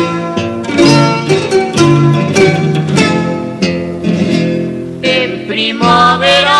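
A plucked-string rondalla of bandurrias and guitars playing an instrumental passage of an Aragonese jota, with quick, rhythmic plucked strokes.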